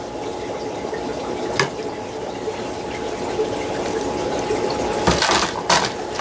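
Steady sound of running water, with one click about a second and a half in. Near the end, a paper towel crinkles as it is handled and opened around broken frozen worm ice.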